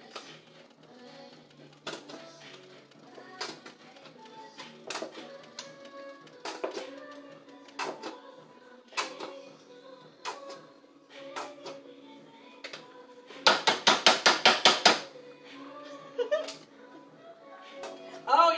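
A nearly empty plastic mayonnaise squeeze bottle being worked over a plastic bowl, giving scattered clicks and knocks. About two-thirds of the way through comes a quick run of about ten loud knocks in a second and a half, as the last of the mayonnaise is shaken out. Background music plays throughout.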